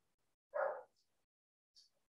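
A single short dog bark about half a second in, faint, in an otherwise silent pause; two tiny faint ticks follow.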